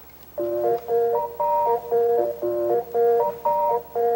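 Title music on picked guitar: a melody of short, bright note groups that repeat with brief gaps between them. It starts about half a second in, out of near silence.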